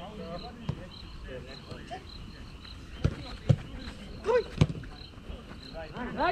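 A football being struck on an artificial-turf five-a-side pitch: four sharp thuds of kicks, the loudest about three and a half seconds in, with a short shout from a player just after the fourth second and distant calls from the other players.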